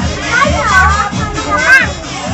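Children shouting and calling excitedly in high voices over loud music with a steady beat.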